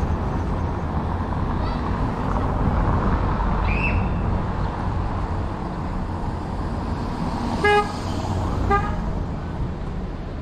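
A vehicle horn beeps twice, a short beep and then a shorter one about a second later, over the steady rumble of street traffic.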